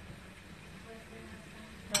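Quiet kitchen background with a faint steady low hum, then a single sharp metallic clink of cookware just before the end.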